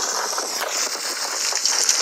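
A rockslide sound effect from a TV cartoon: a rushing, rattling noise of rocks tumbling onto a railway line, played through a TV speaker and picked up in the room.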